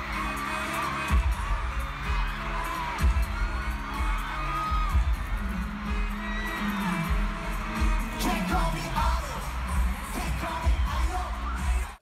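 Live pop concert music in a stadium: a heavy pulsing bass beat under singing.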